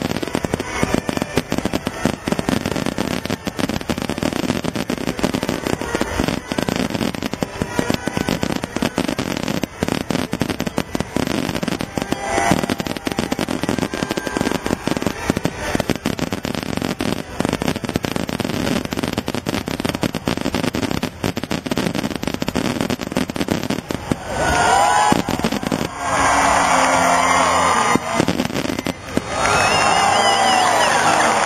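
Fireworks finale: a dense, continuous barrage of aerial shell bursts and crackling with no real break. In the last few seconds it grows louder and people's cheering and whistling rise over it.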